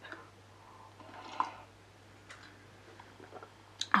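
A person sipping tea from a large ceramic mug: a faint slurp with a small click about a second in, then a few soft swallowing ticks, and a sharp click near the end.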